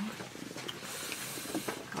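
Faint scratching hiss of a pen writing on paper, loudest for about a second near the middle, with a few light ticks.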